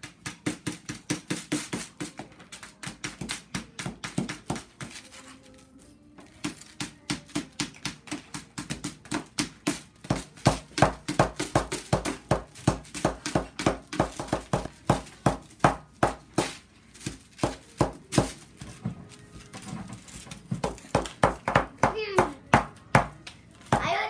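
Rapid tapping and scraping of small plastic hammers and chisels chipping at crumbly dig-kit blocks on paper plates, several sharp taps a second.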